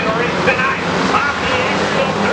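A pack of hobby stock race cars at speed on a dirt oval, many engines running at once in a dense, steady wash of noise, their pitches rising and falling as the cars go through the turn.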